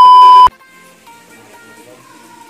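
A loud, steady test-tone beep of the kind that goes with TV colour bars, cutting off sharply about half a second in. Soft background music with a melody follows.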